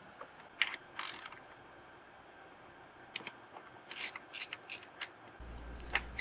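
Socket ratchet clicking as an 8mm bolt holding the fuel tank to the frame is undone: a couple of separate clicks about a second in, then a run of quick, uneven clicks in the second half.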